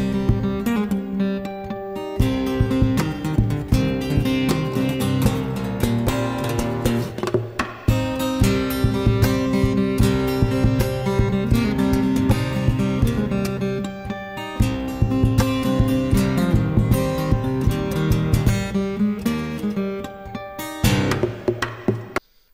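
Solo steel-string acoustic guitar played in a percussive fingerstyle: chords, a bass line and melody together, with sharp hits on the guitar standing in for drums. It is a rock song arranged for one guitar.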